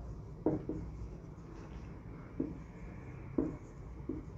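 Marker pen writing on a whiteboard: faint scratching of the felt tip, with several short sharp taps as strokes start and end.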